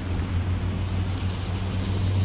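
Steady low drone of a vehicle engine with road noise from a moving vehicle.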